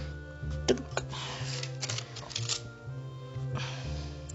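Background music with a steady bass line. Over it come a few sharp clicks and knocks as blocks of tallow soap are pushed through a wooden wire soap cutter and the cut bars are lifted and set down.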